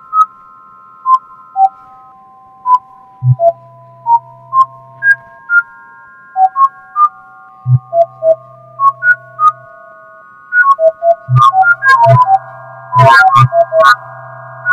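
A scrolling web-app music box plays synthesized electronic tones. Each tone is one line of a poem turned into a pitch and is set off by scrolling the page. Each tone starts with a click and is held; they come one at a time at first, then overlap and come quickly near the end, with a low hum under some of them.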